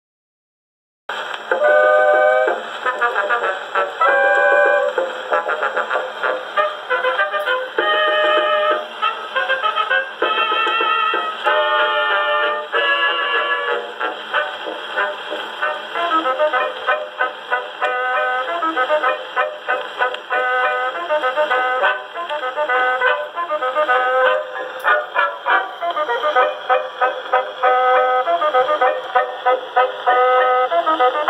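A 1922 Edison Diamond Disc fox trot by a dance orchestra, brass to the fore, played back on an Edison C-200 acoustic phonograph. It starts about a second in, with a thin sound that has no deep bass or top.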